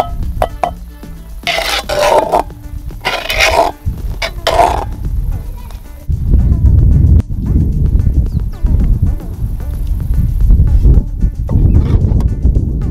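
Background music throughout. In the first five seconds there are three short scraping noises as a bowl scoops and shapes stiff maize porridge in a cast-iron pot.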